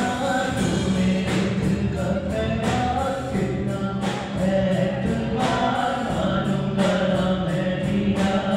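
A live band playing a song, with a male singer singing into a microphone over electric bass, acoustic guitar, keyboard and drums. A steady beat runs through it.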